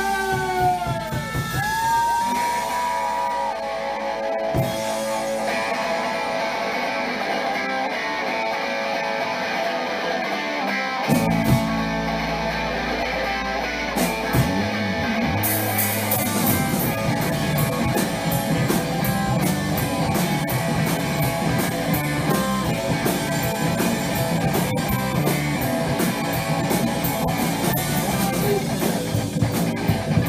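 Live rock band playing: guitar carries the opening with sustained notes, the low end joins about eleven seconds in, and the full band with drums comes in about fifteen seconds in.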